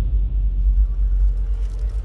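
A deep, low rumble slowly dying away: the ring-out of a rock band's drums and bass after a big hit.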